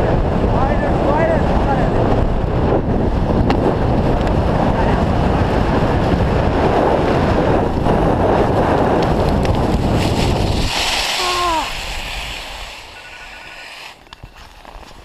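Wind buffeting the microphone of an action camera during a fast ski run downhill, loud and steady, cutting off suddenly about eleven seconds in as the skier slows and stops.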